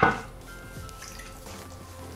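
Water being poured into a pan of simmering tomato sauce, a faint, steady pouring sound, over quiet background music.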